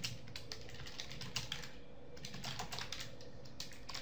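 Computer keyboard being typed on: quick, uneven key clicks, with a short pause about two seconds in.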